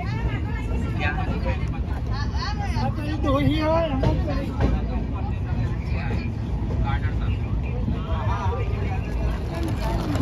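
Passengers' voices chattering close by over a steady low rumble, the voices busiest in the first few seconds and again near the end.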